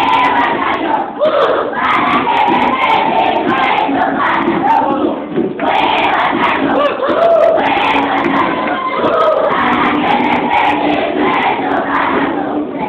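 A large group of children singing together loudly, their voices held on notes that slide up and down in pitch.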